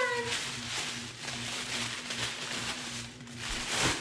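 Tissue paper rustling and crinkling as it is pulled out of a box, with a louder rustle near the end.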